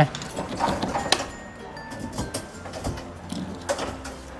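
Claw machine sounds: scattered clicks and knocks, the sharpest about a second in, with a few faint electronic beeps over low arcade background noise.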